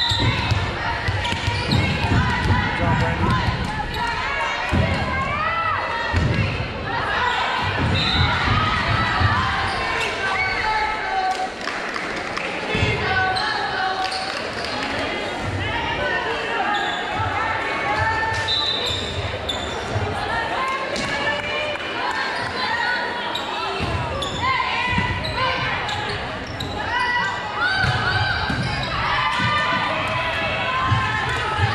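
Echoing voices of players and spectators calling and cheering in a large gym, with a volleyball being hit and bouncing on the hardwood court.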